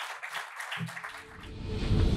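Audience applauding with dense, even clapping; in the second half music fades in and grows louder while the clapping fades under it.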